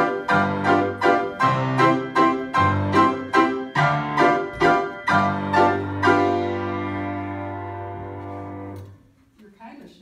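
Piano playing loud repeated chords, about three a second, then a final chord held about six seconds in that rings and fades away until it is released near nine seconds: the end of the piece.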